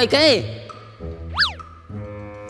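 Cartoon comedy sound effect: one quick whistle-like pitch glide that rises and falls straight back, about a second and a half in, over steady background music.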